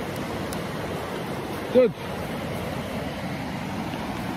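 Sea surf breaking and washing up a shallow sandy beach: a steady, even rush of noise.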